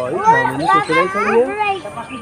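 Several high-pitched voices talking and calling over one another.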